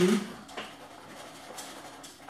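Small hobby servo motor driven by Raspberry Pi software PWM, faintly whirring and clicking as it swings the arm of a tea-brewing machine. Its movement is unstable, the sign of PWM timing disturbed by CPU load.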